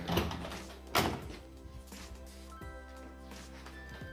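A wooden-framed glass door being pushed open, with two sharp thuds, one at the start and another about a second in, over steady background music.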